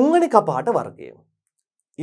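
A man's voice speaking for about a second, then dead silence for most of a second.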